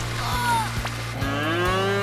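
Cartoon magic cow mooing once, a long call that rises slightly in pitch in the second half, over background music. A brief falling cry comes just before it.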